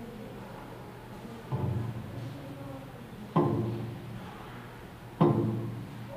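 A taiko drum struck slowly, three single beats just under two seconds apart, each ringing and dying away; the first beat is softer than the other two.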